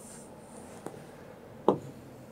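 Stylus pen scratching and rubbing across the glass of an interactive touchscreen board as a line is drawn along an on-screen ruler, with a faint click a little under a second in and a sharper tap about a second and a half in.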